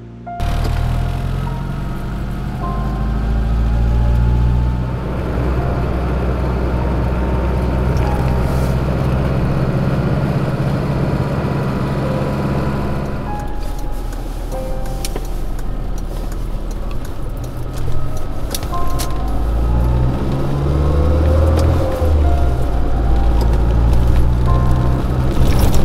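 Rover Mini running along a road, heard from inside the cabin: steady low engine and road rumble, with a whine that rises in pitch a few times. Music plays along with it.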